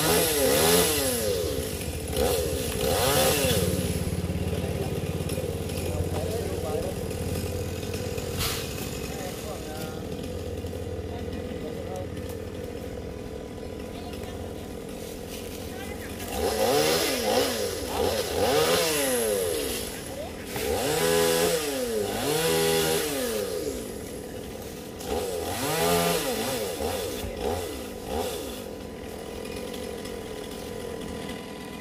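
A gas chainsaw revved in short bursts, each rising and falling in pitch, as it makes small cuts: a few bursts at the start, then idling between about 4 and 16 seconds, then half a dozen more bursts.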